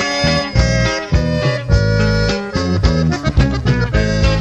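Norteño band playing an instrumental break with no vocals: a button accordion carries the melody over a strummed bajo sexto and a steady bass line.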